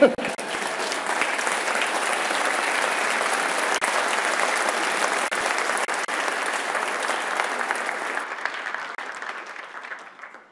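Audience applauding in a large hall: dense, steady clapping that dies away over the last second or so.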